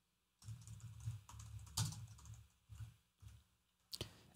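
Faint typing on a computer keyboard: a quick, irregular run of key clicks as a folder name is typed, stopping about three seconds in, with one more click near the end.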